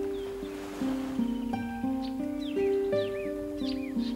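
Classical guitar playing a slow melody of plucked notes. A soft ocean wave washes in about half a second in, and a bird calls several times in quick arched chirps in the second half.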